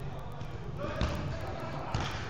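A football kicked twice on an indoor artificial-turf pitch: two sharp thuds about a second apart, the second near the end, with players' voices shouting.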